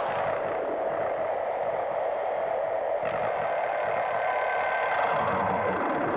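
Ambient electronic intro: a steady synthesizer drone of held tones under a hiss of noise, with no beat.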